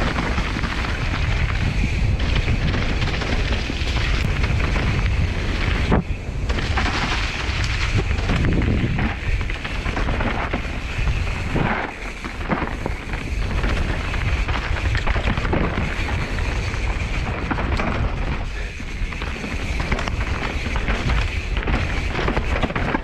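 Mountain bike descending a dirt forest trail: rushing wind on the camera microphone and knobby tyres rolling over packed dirt and dry leaves, with frequent short knocks and rattles from the bike over bumps.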